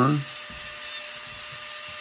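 Rotary carving tool with a small bit grinding the beak area of a wooden bird carving, running as a steady whine.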